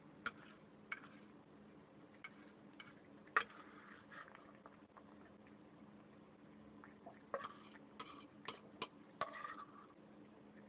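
Cat eating food off a plate, chewing and licking. It is heard as faint, irregular small clicks that come more thickly in the last few seconds.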